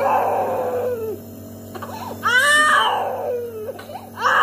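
Infant crying in two long wails: one fading out about a second in, the next starting a little after two seconds in, rising and then falling in pitch. A steady low hum runs underneath.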